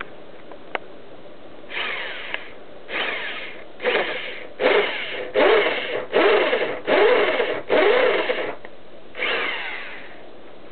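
Electric hand drill boring a hole, run in short pulses on the trigger: about nine bursts, each under a second, starting about two seconds in, the motor's pitch rising and falling within each.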